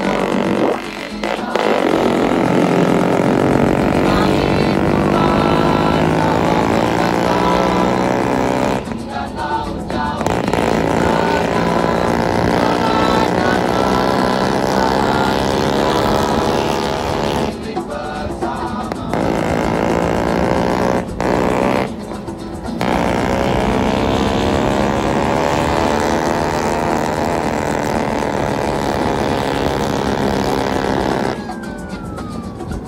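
Engine of a modified Vespa scooter running under way, a steady drone whose pitch slowly rises and falls with the throttle, dipping briefly three times.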